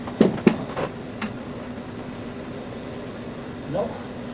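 Refrigerator running with a steady low hum, with a few sharp knocks in the first second.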